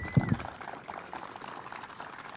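Crowd applauding: steady, fairly light clapping.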